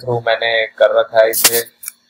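A man talking, with one sharp, loud click about one and a half seconds in.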